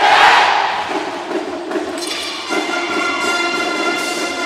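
Marching band brass playing. A loud wash of noise fades over the first second. Low brass holds a chord, and the full brass section enters with a bright sustained chord about two seconds in.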